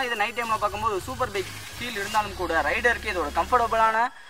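A man speaking, over low background music that cuts off at the end.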